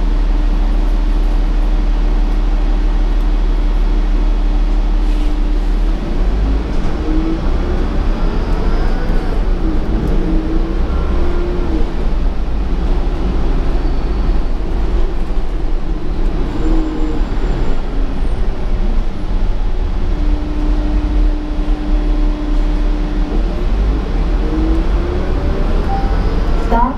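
Interior sound of a 2015 Gillig Advantage transit bus: a low engine rumble with a steady hum while it idles, then from about six seconds in the engine and transmission whine rise and fall as the bus pulls away through its gears. Near the end the hum holds steady for a few seconds before rising again.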